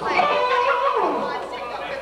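Several people's voices chattering in a room, with no clear words, one voice sliding down in pitch about a second in.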